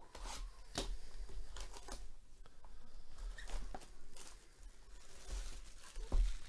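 Plastic shrink wrap being torn and stripped off a cardboard trading-card hobby box: an irregular run of crinkles, crackles and rips.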